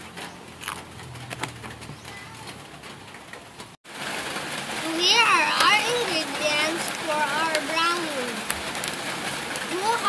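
Mostly a child talking, beginning after a sudden cut about four seconds in; before the cut, a quiet stretch with a few light clicks and a faint low hum.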